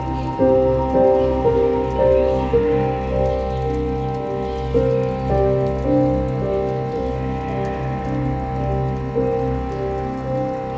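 Slow, calm instrumental ambient music: a sustained low drone under a melody of long held notes, which comes in about half a second in.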